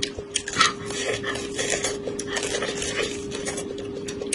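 Close-up chewing of boiled white corn kernels bitten from the cob: irregular crisp clicks and wet crunches from the mouth. A steady low hum runs underneath.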